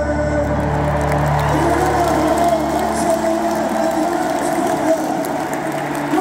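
A live rock band in a stadium, heard from the stands: held, wavering singing over a steady bass, with crowd noise. The low bass drops out about five seconds in as the song winds down.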